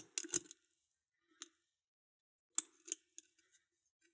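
Light metallic clicks of a lock pick and wire tensioner working inside an Adlake railroad padlock: a few quick clicks at the start, a single one about a second and a half in, and a small cluster near the end as another part inside the lock is felt to set.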